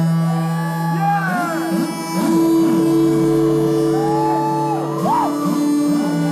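Live dream-pop band playing held, droning chords that shift about two seconds in and again about five seconds in, with scattered whoops from the crowd.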